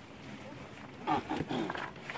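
A young person's voice making a few short strained grunts about a second in, the effort of hauling out of a narrow cave shaft.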